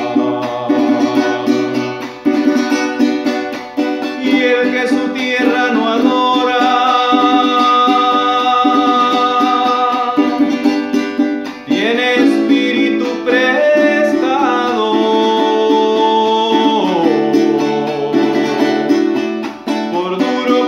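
A man singing over a strummed Venezuelan cuatro, holding long notes that waver slightly in pitch, while the strumming keeps a steady rhythm underneath.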